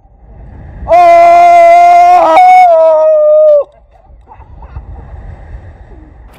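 A person's long, loud scream on the Tarzan swing. It is one high, held yell lasting nearly three seconds that breaks in pitch partway through, sags slightly and then stops abruptly.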